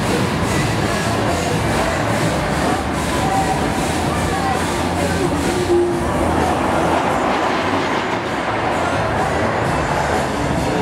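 Funfair din: a steady rumbling and clattering from the rides' machinery, with crowd voices mixed in.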